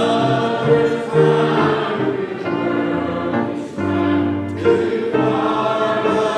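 Church congregation singing a hymn together, in held notes that change every half-second or so.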